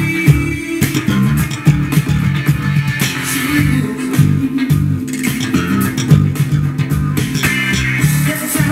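Slap bass on a Status 3000 carbon-fibre headless electric bass: funk lines of quick, percussive thumbed and popped notes, played along to a funk backing track.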